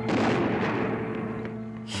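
Gunfire: a sudden loud burst that starts at once and dies away in an echoing tail over about a second and a half, over a steady background music drone.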